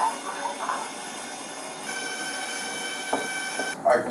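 SOTER RS full-body X-ray scanner running as the inmate stands on its platform: a steady, high-pitched whine of several tones that starts about halfway through and cuts off suddenly near the end.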